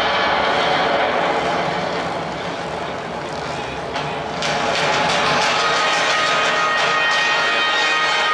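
Football stadium crowd, a dense steady din, with the public-address system echoing over it. The din eases slightly in the middle and swells back about four and a half seconds in.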